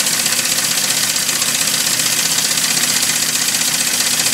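Several small brass model steam engines running together on compressed air: a steady, rapid chatter of exhaust puffs with a constant hiss of air.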